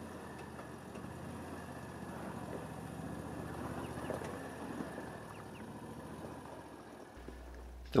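Argo Frontier 8x8 amphibious vehicle's V-twin engine running faintly and steadily as it drives.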